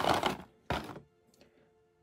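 A small white cardboard box being handled and opened: a brief scraping rustle of card, then a single sharp knock a little under a second in.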